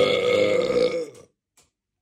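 A man's long, loud belch that stops a little over a second in.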